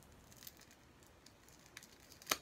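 Near silence: room tone with a few faint clicks of small plastic PopSocket grips being handled.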